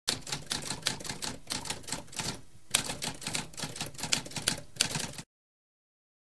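Typewriter typing: a fast, uneven run of key strikes with a short pause a little over two seconds in, then it cuts off suddenly just after five seconds.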